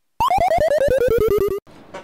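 Synthesized cartoon-style sound effect: a rapid run of short pitched pulses, about ten a second, falling steadily in pitch for about a second and a half before cutting off.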